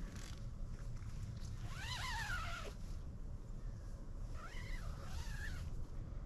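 Two drawn-out animal calls, each rising and then falling in pitch, about two seconds in and again near the end, over a steady low rumble.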